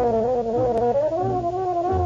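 Solo trumpet with orchestra in a 1946 radio broadcast recording: a held note that slides slowly down and then back up in pitch, over a pulsing bass line.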